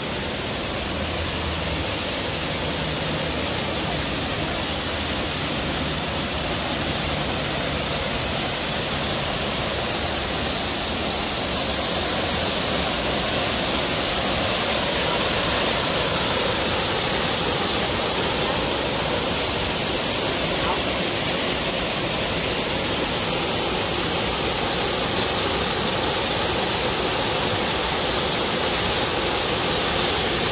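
Waterfall pouring over a sandstone ledge into a rock pool: a steady rush of falling water that grows slightly louder over the first dozen seconds.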